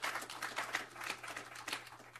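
Applause from a small group of people clapping. It thins out and fades near the end.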